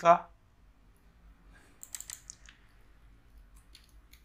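A few quiet clicks from a computer being operated. A quick cluster of clicks comes about two seconds in, and a few fainter ones come near the end.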